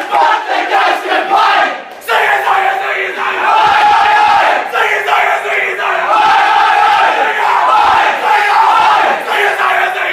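A dressing room full of cricketers singing their club's team song together in loud unison after a win, with a short break about two seconds in.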